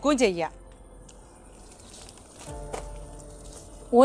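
A woman's voice trailing off about half a second in, then faint background noise with a single click, and a low steady hum from about halfway through until just before the end.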